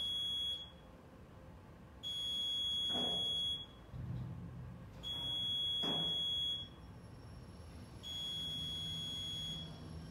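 A high-pitched electronic beep, each about a second and a half long, repeating every three seconds over a low hum.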